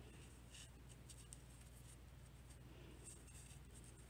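Near silence: faint rustling and rubbing of a small stuffed fabric ball worked between the fingers, with scattered soft ticks over a low steady hum.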